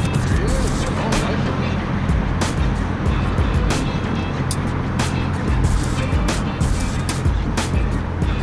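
Background music mixed with a steady low rumble of road traffic crossing the bridge overhead, broken by irregular sharp clicks.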